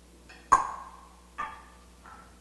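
Two sharp clinks of glassware, each ringing briefly: a louder one about half a second in and a softer one about a second later.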